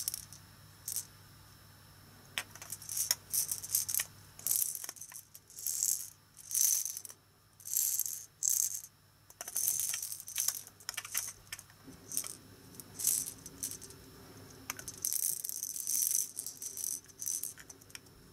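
Plastic toy salt and pepper shakers shaken by hand, rattling in a string of short, irregular bursts.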